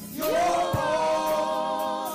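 Worship singers singing a slow gospel worship song in harmony. The voices come in about a quarter second in, glide up, and hold long notes together.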